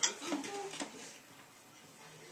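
Soft voices and breathy giggling for about the first second, then quiet room sound.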